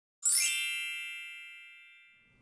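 A bright chime for the animated channel logo: it starts with a quick upward sparkle and leaves several bell-like tones ringing that fade away slowly over about two seconds.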